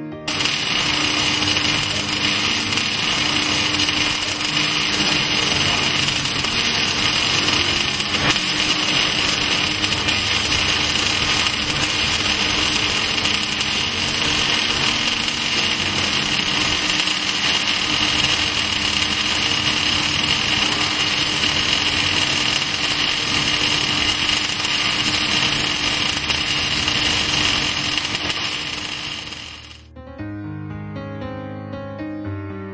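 Gas-shielded arc welding by an automatic weaving welding carriage, a steady arc hiss that starts about a quarter second in and cuts off just before the end.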